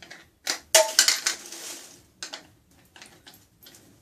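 Plastic hair-product bottles and aerosol cans being handled and set down: a cluster of sharp knocks and clatter about half a second to a second in, then a few lighter clicks.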